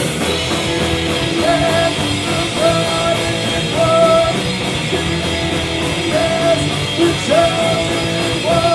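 Punk rock band playing live: distorted electric guitar, bass and drums with a steady cymbal beat, under shouted vocals. A short held note comes back about once a second.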